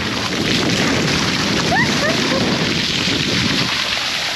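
Water gushing from a large irrigation pipe and splashing down over a person and onto the wet ground: a loud, steady rushing splash.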